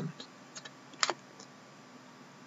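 A few light ticks of trading cards being handled and flipped through, with one sharper click about a second in.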